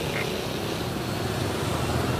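Steady rain falling, an even hiss with a low rumble underneath.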